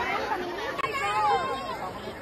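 A group of children chattering and calling out together, with one high child's voice standing out about a second in.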